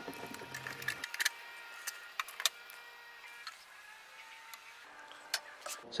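Faint, scattered small clicks and taps from handling the reel-to-reel tape recorder's case while its back screws are undone.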